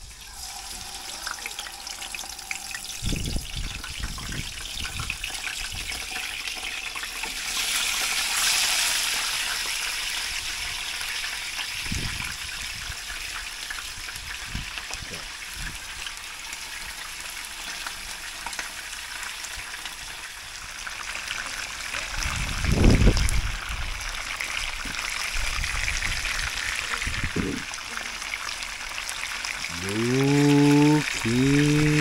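Whole fish, a papio among them, sizzling as they shallow-fry in hot oil in a frying pan. The sizzle swells louder about eight seconds in, and a few dull knocks come through as the pan and fish are handled.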